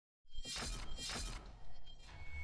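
Logo-intro sound effect: two short, hissy sweeps, strongest in the treble, about half a second apart, with a smaller one after them, over a low steady hum.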